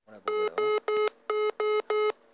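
Zello push-to-talk app sounding a buzzy electronic error beep in quick groups of three, twice: the transmission attempt fails because the app cannot record from the microphone.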